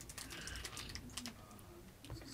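Faint, irregular light clicks and taps over a low room hum.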